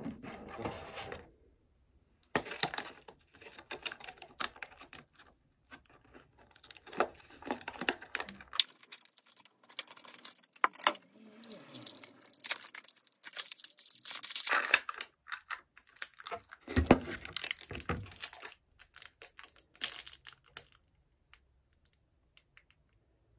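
Thin clear plastic food packaging crinkling and crackling in the hands as a stiff container is worked open and snacks in plastic cup liners are pulled out. Irregular crackles in clusters, with a few sharper snaps.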